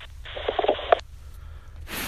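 Telephone-line audio from a caller's call as it ends: a short stretch of muffled, narrow-band sound ending in a click about a second in, over a low steady hum.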